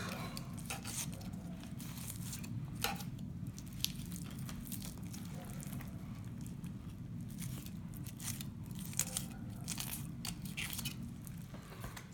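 Fillet knife slicing along a northern pike's rib bones, with faint irregular ticks and crackles as the blade rides over the bones and the flesh pulls away.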